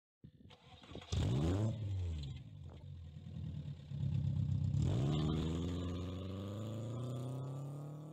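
Car engine revving: a sudden rev about a second in that rises and falls in pitch, then from about five seconds a long pull with the pitch climbing steadily, as under acceleration.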